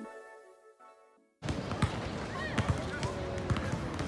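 Music fades out, and about a second and a half in the sound cuts to an outdoor basketball court: basketballs bouncing on the court at an irregular pace, several knocks a second, with voices in the background.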